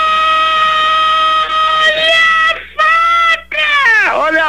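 A voice holding a long, drawn-out "Ohhh!" on one steady high pitch, breaking off about two and a half seconds in, then a shorter held note near three seconds.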